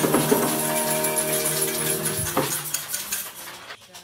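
Many small handheld percussion instruments, including shakers, tambourines and jingle bells, rattling and jangling over a held closing chord at the end of a song. The music fades away over the last second or so, leaving a few scattered rattles.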